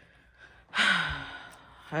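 A woman's long audible sigh: a breathy exhale with a voiced tone that falls in pitch, starting just under a second in and fading over about a second.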